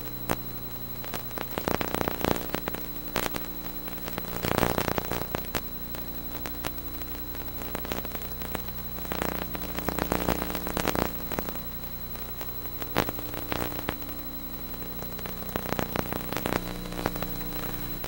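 Steady low electrical hum with a faint high-pitched whine, broken by irregular crackles and pops: the background noise of an old broadcast recording.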